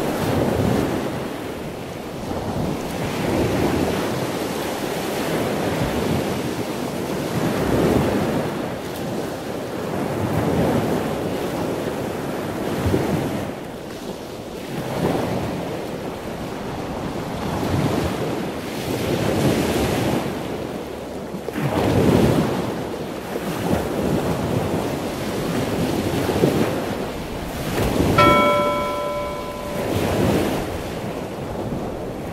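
Ocean surf: waves washing in and breaking, swelling and fading every two to three seconds, with some wind. A brief bell-like ringing tone sounds near the end.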